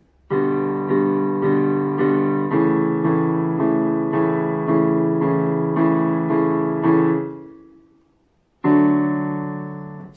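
Casio CDP-130 digital piano playing a chord repeated about twice a second for about seven seconds, then letting it fade out. Near the end a final chord is struck and held: the song's closing D major.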